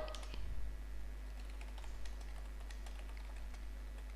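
Typing on a computer keyboard: a run of faint, quick, irregular keystrokes.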